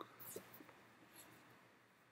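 Near silence: room tone, with a faint click at the start and a few faint soft sounds in the first second.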